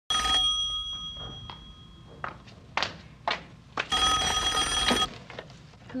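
Rotary telephone's bell ringing: a short ring at the very start that dies away, then a full ring of about a second around the four-second mark, with a few soft knocks in between.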